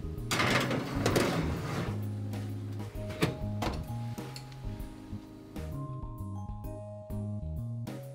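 Background music, with a metal sheet pan scraping as it slides onto a wire oven rack during the first two seconds, then two sharp knocks a little after three seconds in as the oven door shuts.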